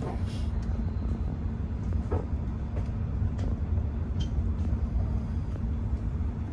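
Steady low rumble of a moving train heard from inside the carriage, with a few short knocks or clicks from the running gear.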